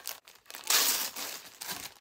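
Packaging wrapper crinkling and rustling as it is pulled off a knitting needle case, loudest in a burst about a second in.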